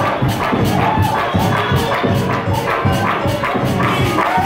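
Live church praise-break music: drums keep a fast, steady beat, with cymbal hits about four times a second over a pulsing bass, and pitched instrument or voices over it.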